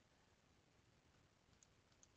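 Near silence, with two faint computer mouse clicks near the end.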